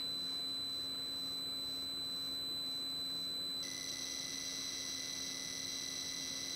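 Sharp EL-5500III pocket computer's buzzer sounding the cassette data coming in as it loads a BASIC program through the CE-129P interface. A steady high-pitched tone changes a little over halfway through into a denser warble of two high tones as the program data itself arrives.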